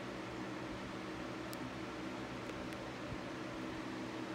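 Steady low machine hum with background hiss, broken by a few faint clicks about a second and a half in and again near the three-second mark.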